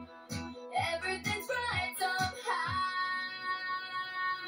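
Pop song with a female lead voice singing over bass and backing, the bass notes stopping about three seconds in while the voice holds one long note to the end.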